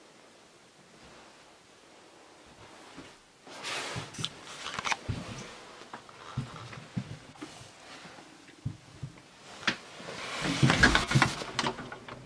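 Quiet room tone, then irregular knocks, clicks and rustling of someone handling things and moving about in a small wooden room. A louder swell of noise comes near the end as a door is opened to the outside.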